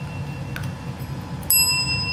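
Chrome desk service bell struck once by a dachshund puppy's paw about a second and a half in, ringing on with a steady high tone.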